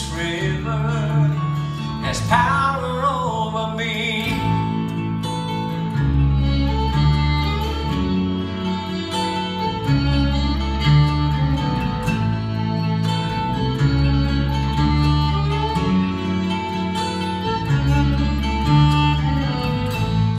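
Bluegrass band playing an instrumental break: a fiddle carries long held notes over strummed acoustic guitars, mandolin and a walking electric bass.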